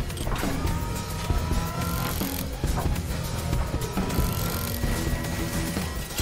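Background music with a steady beat, over a battery-operated transforming toy car's small electric motor and electronic sound effects as it folds itself from robot into car, with two slightly rising whines.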